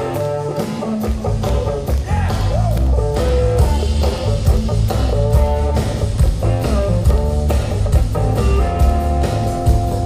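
Live rock band playing a blues number: electric guitar lead with bent notes over drum kit and bass guitar. The bass and low drums come in about a second in.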